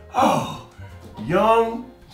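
A man's wordless vocal exclamations: two drawn-out calls with sliding pitch, one early and one in the second half, over faint background music.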